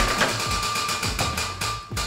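Background music with a drum beat, over the rapid ticking of a spinning prize wheel's pointer clicking past the pegs.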